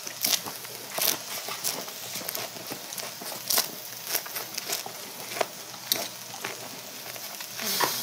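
Pork belly sizzling on a grill plate: a steady frying hiss with frequent sharp crackles and pops.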